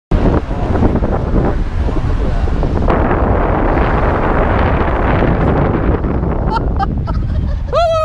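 Heavy wind buffeting the microphone of a camera on a moving car, a loud, rumbling rush over the car's road noise. Just before the end a high, drawn-out tone starts, gliding down.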